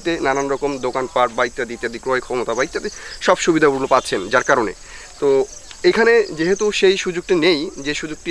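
A man's voice speaking almost without pause, over a steady high-pitched insect drone that runs underneath.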